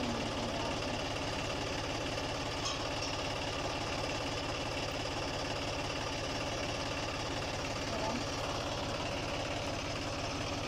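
John Deere tractor's diesel engine idling steadily, with an even pulsing throb. A couple of faint knocks sound over it.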